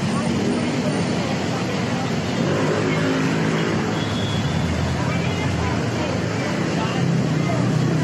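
Steady noise of busy road traffic, with people talking faintly.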